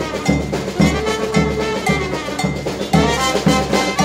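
Brass band playing live: trumpet, saxophone and tuba carry the melody over snare drum and a large bass drum keeping a steady beat, about two beats a second.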